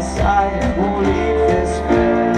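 Pop-punk band playing live: drums with regular cymbal hits, acoustic and electric guitars and bass, with some singing.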